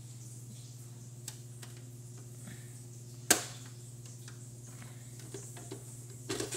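Small plastic clicks, with one sharp snap about three seconds in, from a plastic Take-n-Play toy engine shed and toy engine being handled and worked open. A steady low hum runs underneath.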